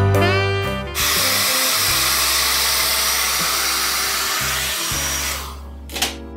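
Handheld hair dryer blowing, starting suddenly about a second in and dying away shortly before the end, under background music.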